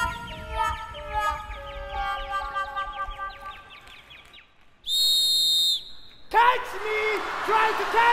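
Show music: a run of ringing notes stepping downward and fading away, then a single shrill whistle blast of about a second near the middle. A man's voice then calls out in long held tones.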